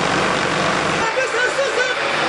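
Loud steady street noise with traffic, and people's voices rising over it from about a second in.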